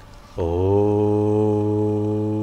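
A man's voice intoning a long, steady 'Om' on one low pitch, beginning about half a second in, as the opening of a Hindu prayer chant.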